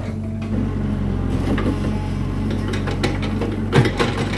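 Komatsu mini excavator's diesel engine running steadily while the bucket digs and lifts soil, with a few knocks as it works, the sharpest near the end.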